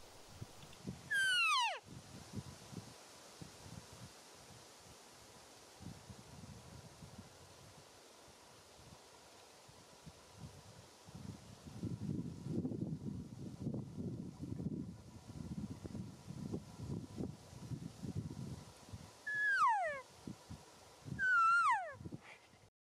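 Elk calling: short, high whistled calls that slide down in pitch, one about a second in and two close together near the end. Low rustling runs in the quieter middle.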